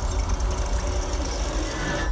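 Horror trailer soundtrack: a deep, rumbling drone under a harsh hissing layer, played under the title card.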